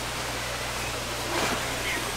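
Steady background noise: an even hiss with a low, steady hum underneath.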